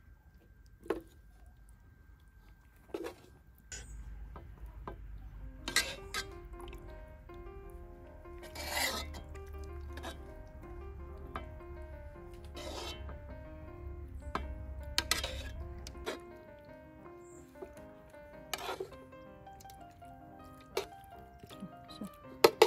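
A metal serving spoon clinking against a steel pot and a porcelain plate as stewed beef is dished up, in a handful of sharp knocks. Soft melodic background music comes in about six seconds in and plays under the clinks.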